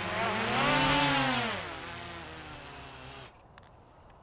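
DJI Mavic 2 Pro quadcopter's propellers whining as it is hand-caught and landed: the pitch rises, then slides down as the motors slow, and the whine cuts off suddenly a little over three seconds in as the motors stop.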